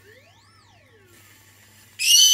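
Whipped-cream aerosol can spraying cream onto a cake, a faint hiss over the last second. Before it, one faint high squeal rises and falls in pitch.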